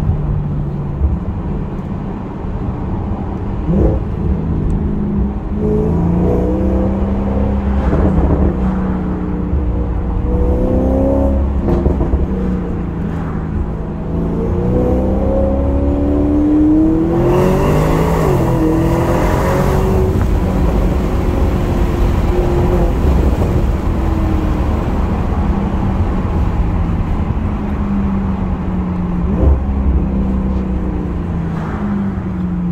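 Stage 3 tuned Audi S6 heard from inside the cabin while driving, its engine note rising and falling with speed over a steady low rumble. About two-thirds of the way through it pulls harder, the engine pitch climbing with a louder rush, then settles back to cruising.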